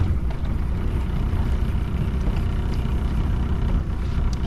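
Outboard motor of a small fishing boat running steadily: a continuous low hum under an even wash of noise.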